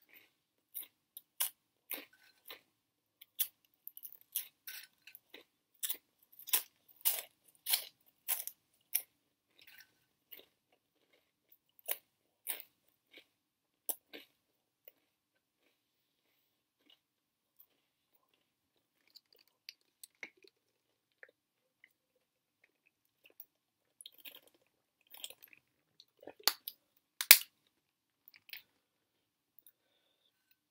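Veggie straws being crunched and chewed close to the microphone, in quick crisp crunches at first. They thin out to scattered crunches in the middle, then pick up again near the end with one sharp, loud crunch.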